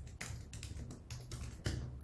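Typing on a computer keyboard: a quick, uneven run of key clicks as a terminal command is typed.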